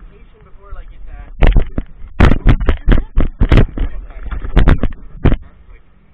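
Handling noise of an action camera: a run of loud, sharp knocks and scrapes right at its microphone over about four seconds as it is taken in hand and set down.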